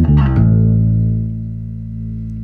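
Electric bass played through an EBS MicroBass II preamp with its drive control turned up: a short note, then one low note held and slowly fading.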